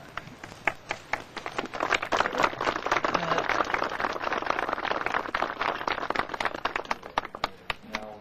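Audience applauding: a few scattered claps at first, building to steady applause by about two seconds in, then thinning out near the end.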